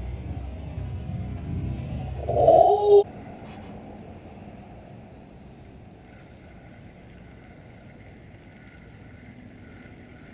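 Low rumble of wind buffeting the microphone, with a short wordless cry that bends in pitch a little over two seconds in. At about three seconds the sound drops abruptly to a faint steady hiss.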